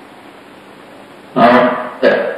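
Steady low hiss of room tone, then a person starts speaking about a second and a half in.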